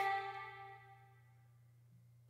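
The last held note of a woman's sung vocal line, steady in pitch, dying away over about a second, then near silence. The vocal is playing back through parallel peak and RMS compression.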